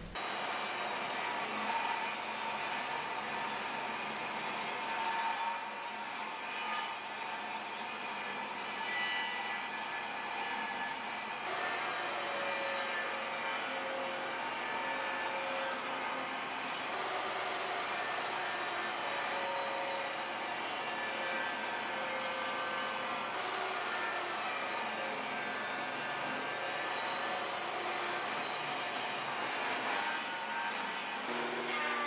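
DeWalt table saw running steadily while ripping mahogany, its tone wavering slightly as the wood is fed through.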